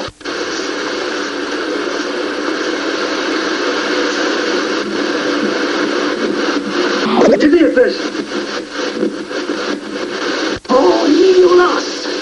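Radio static: a steady hiss with faint snatches of voices, and warbling whistles that glide in pitch about seven seconds in and again near the end. The sound briefly cuts out just before the end.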